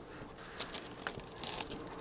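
Faint crinkling of thin plastic laminating film as it is handled and cut with scissors, with a few light clicks in the second half.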